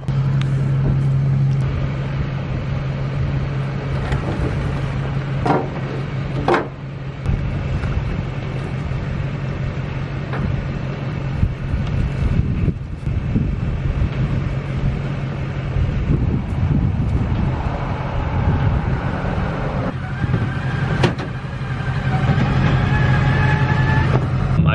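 A vehicle engine running steadily, with a few sharp knocks and clanks about five seconds in, again a second later, and near the end.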